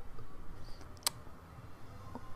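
A single sharp click about a second in, against faint, steady low room noise.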